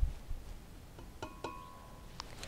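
Quiet handling sounds from a tin of condensed milk tipped over a pitcher: a low thump, then a few faint taps and a short ringing clink about a second in.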